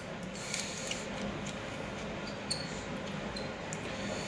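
A few faint, light metallic clicks and small scrapes as the adjusting screw of a pair of mole grips (locking pliers) is turned by hand, over a steady low hiss.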